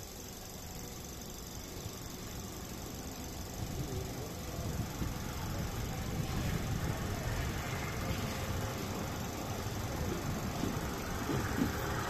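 Passenger train pulling out of a station, the rumble of the carriage and wheels on the rails growing steadily louder as it gathers speed, heard through an open carriage window.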